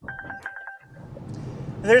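Car's electronic chime: a quick run of short beeps at two steady pitches for about a second. Then road and tyre noise rises inside the moving car.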